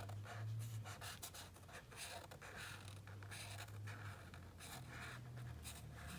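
Felt-tip marker colouring in on paper, a soft scratching of quick, irregular short strokes.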